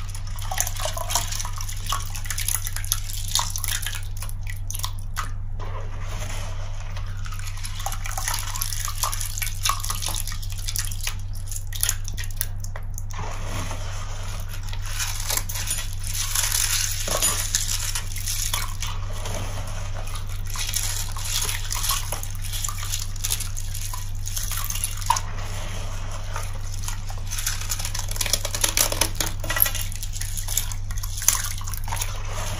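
Wet, crystallized Ariel detergent paste squeezed and crumbled by hand in a tub of soapy water: many small crackles and clicks from the crystals, with dripping and splashing as crystals and soapy water fall back into the tub.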